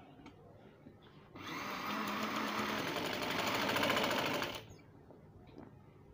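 Sewing machine stitching down a folded fabric strip. It runs for about three seconds, starting about a second and a half in, grows a little louder, then stops suddenly.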